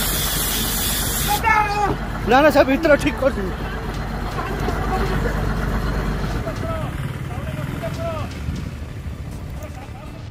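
Low rumble of a slowly moving electric train with a fire under its carriage, a sharp hiss in the first second and a half, and onlookers' voices shouting over it about two to three seconds in, with fainter calls later.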